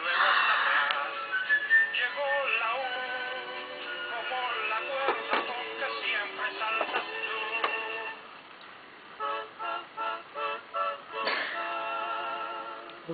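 Electronic baby activity toy playing a tinny tune with a synthesized singing voice, with a run of short repeated notes near the end and a couple of sharp knocks.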